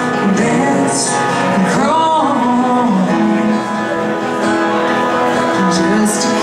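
Live country song played on acoustic guitars, strummed rhythm under a lead line, with a sung melody carried on long held and sliding notes.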